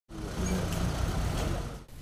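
City street traffic: the running of vehicle engines with a steady low hum and general road noise, stopping shortly before the end.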